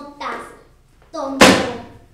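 A single loud, sharp hit about one and a half seconds in, dying away over half a second, in a staged bullying scene between children.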